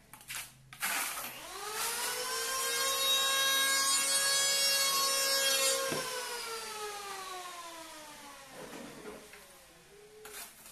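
A small motor whines as it spins up about a second in, runs at a steady pitch for about five seconds, then is cut off and winds down with a slowly falling whine for about three seconds. A couple of short knocks come just before it starts.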